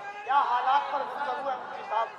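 Men's voices talking near the stage microphone, several people chattering at once.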